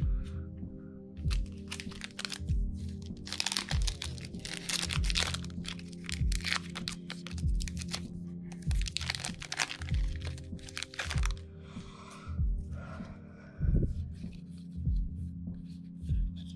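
A foil trading-card booster pack wrapper crinkling and being torn open, in several crackly spells across the middle, over background music with a steady beat.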